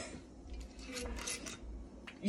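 A few faint clicks and clinks from a glass vodka bottle being handled as its cap comes off.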